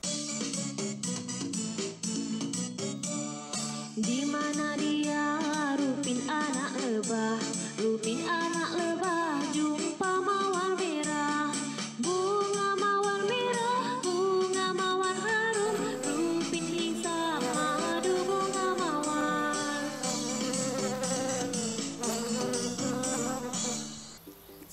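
A children's song: a pitched melody moving from note to note over a steady beat.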